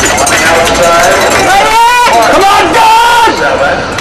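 Spectators yelling and cheering during a hurdles race: several loud, drawn-out, high-pitched shouts over general crowd noise.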